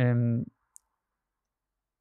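A man's voice holding a short sound for about half a second, then dead silence broken once by a faint, brief click.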